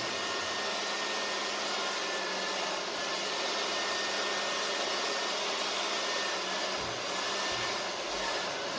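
A steady, loud rushing noise like an air blower running, unchanging throughout, with a faint high steady tone running through it.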